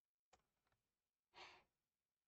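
Near silence, with a faint click just after the start and a soft breath, like a quiet exhale, about one and a half seconds in.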